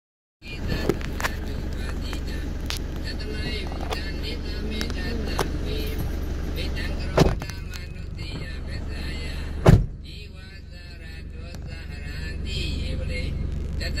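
Steady low hum of a car's engine heard from inside the cabin, with small clicks and knocks of the phone being handled. Two heavier thumps come about seven and nine and a half seconds in.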